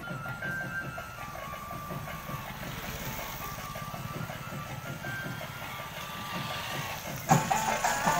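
A vehicle engine running with a steady low throb, with music playing faintly under it. About seven seconds in, louder music with strong drumbeats cuts in.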